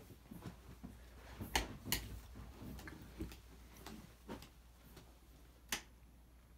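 Light switches clicking as the room lights are tested: a few sharp, separate clicks, the loudest two close together about a second and a half in, the last just before the end.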